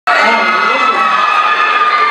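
Audience cheering, with many high-pitched voices shouting at once and a steady din throughout.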